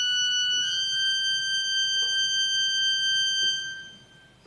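Organ holding a high sustained chord, which moves once to a slightly higher note about half a second in, then dies away near the end.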